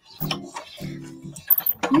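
Spellbinders hand-cranked die-cutting machine being cranked, the cutting-plate sandwich pressing through its rollers to cut a die: two steady-pitched creaks, the second longer. A voice starts near the end.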